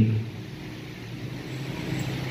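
A steady low rumble of a motor vehicle passing, growing slightly louder toward the end. A man's amplified voice trails off at the very start.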